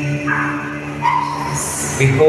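Church choir and accompanying instruments holding a sustained chord in a Mass hymn, with a few short higher sounds near the end.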